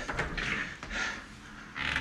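An interior door being opened by its knob: soft handling noises, with a man's breathing.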